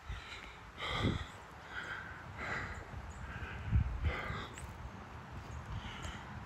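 Heavy breathing of a person walking, close to the microphone: a breath about every second or so, with low thumps under the stronger exhales.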